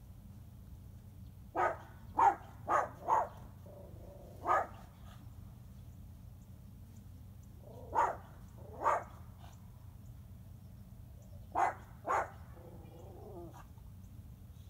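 A dog barking: a quick run of four barks, a single bark, then two pairs of barks, over a steady low hum.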